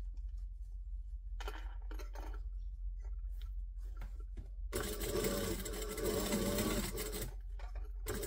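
A Mitsubishi LS2-130 industrial lockstitch sewing machine top-stitching through layers of fabric. First come a few soft clicks and fabric handling as the work is repositioned. About five seconds in, the machine runs a steady burst of stitching for about two and a half seconds and then stops.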